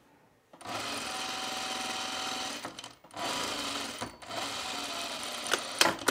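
Industrial sewing machine stitching a tuck in linen, starting about half a second in and running steadily in three stretches with brief pauses between them. A few sharp clicks come near the end.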